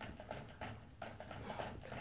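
Toy poodle drinking from the spout of a water bottle hung on its crate, licking at it in a quick, even run of wet clicks, about three to four a second.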